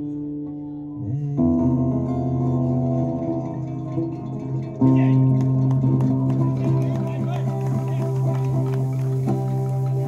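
Two acoustic guitars playing long, ringing chords, with new chords struck about a second and a half in and again about five seconds in: the slow close of the last song of the set.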